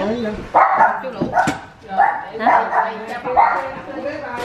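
A dog barking: about four short, loud barks spread over a few seconds.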